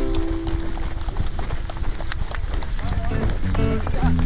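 Footsteps of many runners on a gravel road, with people's voices, heard in a gap in background music that stops about half a second in and comes back about three seconds in.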